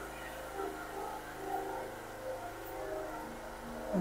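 A steady low hum of an engine or motor running in the background, with faint even tones above it.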